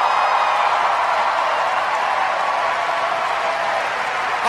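A large crowd cheering and applauding, a steady wash of voices and clapping that eases off slightly near the end.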